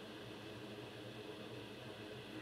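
A small fan running: a steady whirring hum with a few faint whining tones. It cuts in abruptly at the very start.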